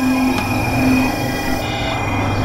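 Dense experimental electronic music: layered synthesizer drones of steady held tones over a noisy, grinding texture, with a low tone that comes and goes and a brief higher tone near the end.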